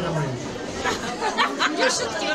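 Chatter: several people talking at once, with no other sound standing out.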